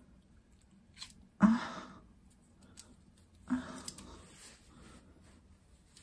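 Two short breathy sounds from a person, like quick exhales or stifled laughs, one about a second and a half in and a weaker one about three and a half seconds in, each fading within half a second.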